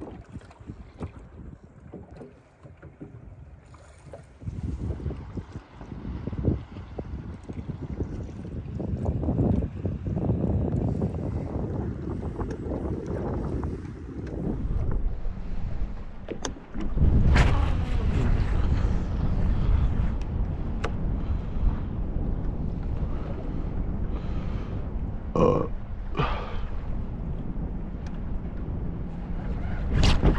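Wind buffeting the microphone on a small aluminium boat in choppy water, with low rumbling noise that grows louder partway through, a bigger jump in level about two thirds of the way in, and a few light knocks.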